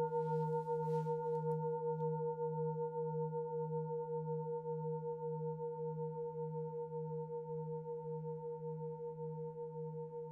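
Large singing bowl ringing on after a strike: a low hum with several higher overtones, wobbling with an even pulse and slowly fading. A faint rustle and a couple of light ticks come in the first two seconds.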